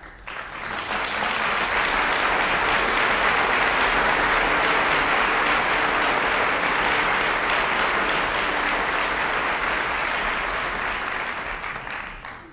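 Opera-house audience applauding, swelling in the first second, holding steady, then dying away near the end, right after the orchestra's closing chord.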